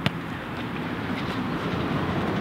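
Steady low outdoor rumble, with one sharp click just after the start.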